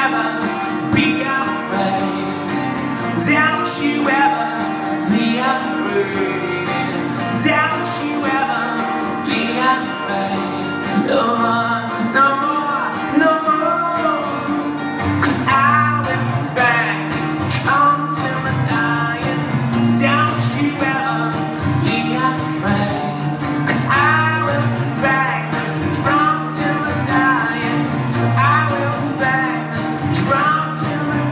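Two guitars playing a song live on stage: strummed chords with a melodic lead line over them.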